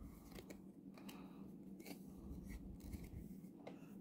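Faint, scattered soft clicks and rubbing of trading cards being handled, slid off a stack one by one.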